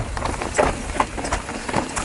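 Mountain bike rolling down a rocky trail: tyres rumbling over dirt and stone with irregular knocks and clatter from the bike over the rocks.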